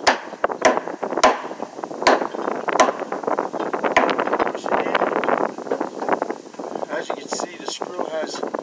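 Claw hammer blows, about six sharp strikes roughly half a second to a second apart over the first four seconds, with wind on the microphone.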